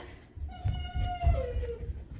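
A labradoodle puppy giving one long whine that falls slightly in pitch, over soft low thumps.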